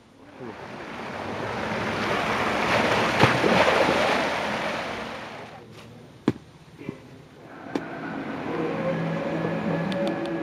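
A rushing noise swells and fades over the first five seconds, then a few sharp strikes of a hoe chopping into soil. Near the end a steady hum with several pitched tones sets in.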